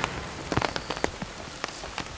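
Steady rain, with irregular sharp drops hitting a clear plastic umbrella.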